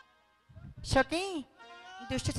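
A stage performer's voice through the PA giving two short loud cries, the second sliding up and falling back in pitch, a little after the start; a softer held note follows near the end.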